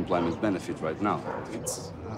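A man's voice speaking in short phrases, heard as film sound played through loudspeakers.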